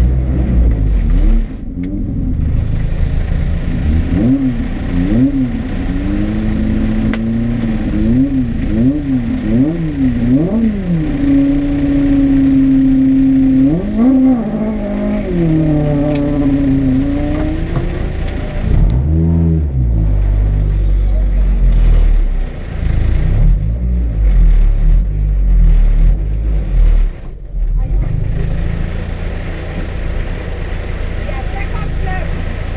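Rally car engine heard from inside the cabin, blipped up and down in quick throttle blips about once a second, then held at steady raised revs for a few seconds. It rises and falls once more, then settles back to a low, uneven rumble.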